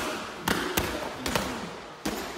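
Boxing gloves striking a coach's focus mitts, three sharp smacks: a pair close together about half a second in, then another a little after a second.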